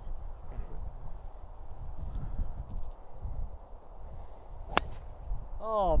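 A golf club striking a ball on a tee shot: one sharp, crisp impact about five seconds in. Before it, a low wind rumble on the microphone.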